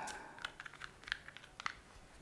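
Faint, irregular light clicks and taps from a Manfrotto Pixi Evo 2 mini tripod being handled, its legs and head moved by hand.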